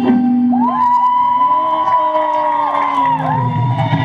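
Loud music for a kummi folk dance, carried by a long held melodic note that slides up about half a second in and dips in pitch twice near the end.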